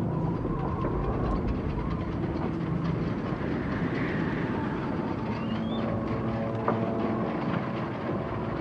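Heavy harbour machinery rumbling steadily as a crane hoists a hanging crate, with a brief rising metallic squeal past the middle and a sharp clank about two-thirds through.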